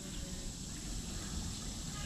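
Quiet outdoor background: a steady low rumble with a thin, steady high-pitched insect drone, typical of crickets or similar insects.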